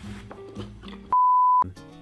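Background music, then about a second in a single steady beep of about half a second, a censor bleep that blanks out all other sound while it lasts and is the loudest thing here.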